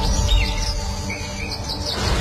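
Birds chirping in several short calls over a low, steady music drone.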